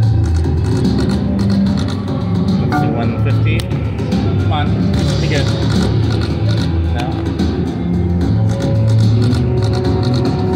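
IGT Golden Rose video slot machine playing its game music and spin sounds over several spins, with steady bass notes and short wavering electronic tones, over casino-floor noise.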